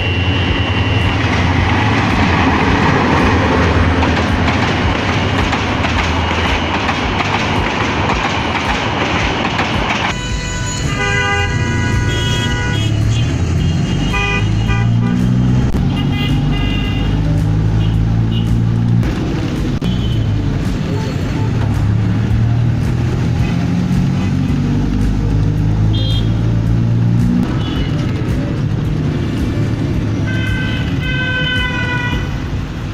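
A train passing close by makes a dense, loud rushing rumble for about ten seconds, opening with a brief horn tone. After that, background music with a stepping bass line plays over traffic, with horns sounding.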